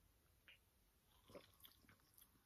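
Near silence with a few faint, short mouth sounds: a person sipping and swallowing a drink from a glass bottle.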